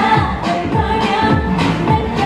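K-pop dance track with female singing over a steady, driving beat, played loud through a stage sound system.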